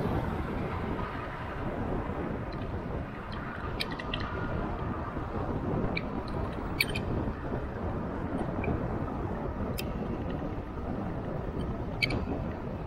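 Steady rushing wind and road noise from riding an electric bike along a road, with a car passing close by near the start. A few sharp ticks sound irregularly throughout, the clearest about seven seconds in.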